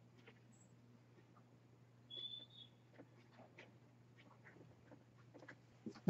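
Near silence: room tone with a low steady hum and faint small clicks, broken once about two seconds in by a brief high squeak.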